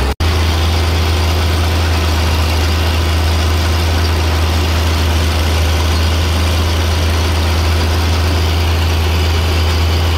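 Caterpillar D6 crawler tractor's diesel engine running steadily while pulling a plow, a loud, even, low drone heard from on board the machine. The sound breaks off for an instant just after the start.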